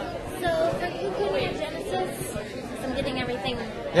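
Indistinct chatter of several students talking at once in a large lecture hall, with no single clear voice.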